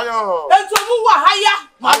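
People talking loudly, with two sharp hand claps, one under a second in and one near the end.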